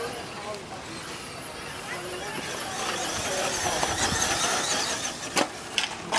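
Electric radio-controlled short-course trucks running on a dirt track: a high motor whine and tyre noise that grow louder from about halfway, with two sharp knocks near the end.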